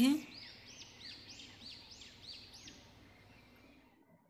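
A bird chirping faintly in the background: a quick series of about seven short, high chirps, about three a second, fading away.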